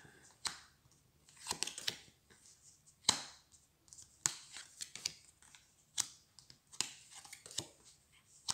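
Game cards being flipped over and laid down on a playmat by hand: a string of short, sharp snaps and brief sliding rustles at uneven intervals, the loudest about three seconds in.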